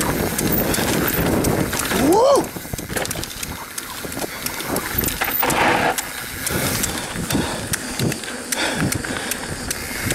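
Mountain bike running fast down a dirt singletrack: a steady rush of tyre and air noise with frequent clicks and rattles from the bike over the rough trail. About two seconds in, a rider gives one short call that rises and falls in pitch.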